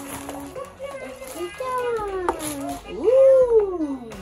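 A young child vocalizing without words: several sliding, sing-song calls, the loudest a long one that rises and then falls about three seconds in.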